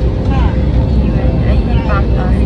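Steady low rumble of an airliner cabin, with a thin steady hum running through it, under snatches of nearby voices.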